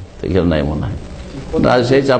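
A man's voice: one drawn-out, sliding utterance, a short pause, then ordinary speech again near the end.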